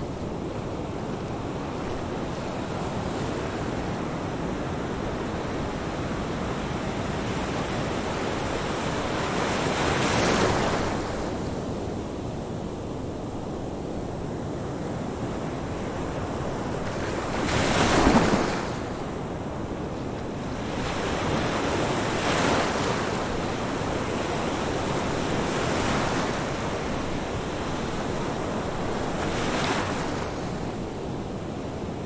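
Steady rush of ocean surf, with waves swelling louder about ten seconds in, most loudly about midway, and several smaller swells toward the end.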